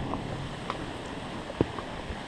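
Steady hiss of rain falling on forest foliage, with a few soft knocks from a walking horse's hooves on a stony trail, the clearest about one and a half seconds in.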